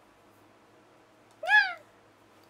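A young woman's voice imitating a cat's meow: one short, high call that rises and then falls in pitch, about a second and a half in.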